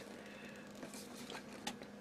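Faint handling noise of hands gripping and pulling at a plastic ABS box whose lid is held shut by strong magnets, with a small click near the end.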